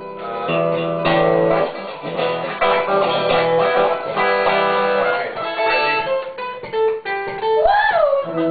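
Guitars played together, chords and picked notes changing every second or so, with a note that slides up and back down near the end.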